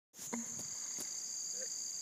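Insects calling in a steady, unbroken high-pitched chorus on two even tones.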